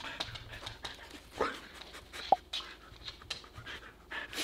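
Husky panting and sniffing in short, quick breaths while nosing around for a hidden scent bag, with a single sharp click a little past two seconds in.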